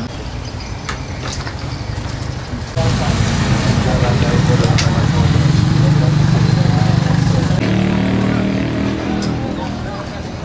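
Background voices, joined about three seconds in by a sudden, loud, steady motor hum that steps up in pitch near the end.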